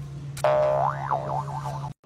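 Cartoon 'boing' spring sound effect about half a second in: a wobbling tone that swoops up and then bounces down and up as it fades, cut off abruptly near the end.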